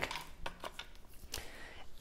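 Faint handling noise: a few small clicks and taps as a string of LED lights and a wooden cutout are moved about on a tabletop.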